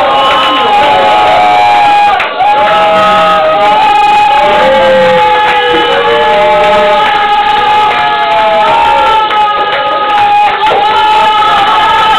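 Loud live blues jam with the crowd cheering and singing along, full of long held notes that bend in pitch. The recording is heavily distorted and dull, with no top end.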